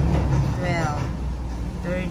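A steady low rumble like a running vehicle engine, with short bits of a voice speaking over it.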